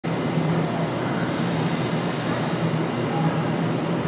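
Steady background noise of an ice-rink arena: a low hum under an even hiss, with one faint click about two thirds of a second in.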